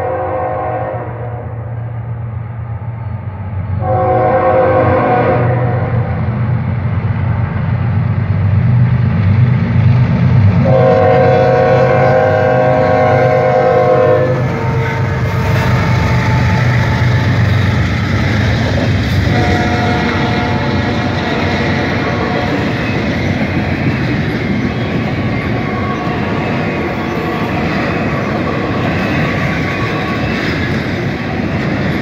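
Freight train headed by three GE diesel locomotives passing close by: the locomotive air horn blasts several times over the first half, the longest about ten seconds in, with a heavy engine rumble as the locomotives go past. After that the double-stack intermodal cars roll by with a steady clatter of wheels on rail.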